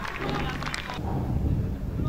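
Outdoor ambience at a football ground: a steady low rumble with faint, distant voices.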